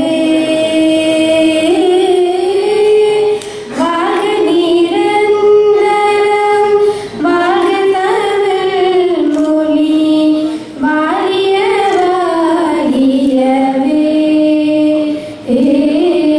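Two girls singing a song together into microphones. The phrases are made of long held, gliding notes, with a short breath between phrases about every three to four seconds.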